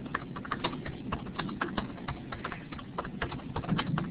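Computer keyboard typing: quick, irregular keystroke clicks, several a second, with no pause.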